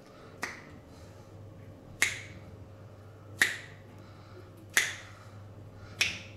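Sharp snaps from a barber's hands working a client's hand and fingers during a massage, evenly spaced about one and a half seconds apart, the first softer than the rest.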